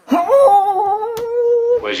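A cartoon character's voice humming one long, closed-mouth note. It slides up at first and then holds steady for about a second. Near the end it gives way to a rush of noise.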